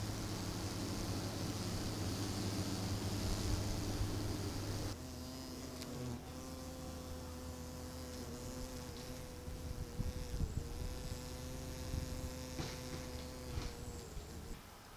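Paper wasps buzzing close to the microphone: a steady wing drone that changes abruptly about five seconds in to a higher hum that wavers slightly.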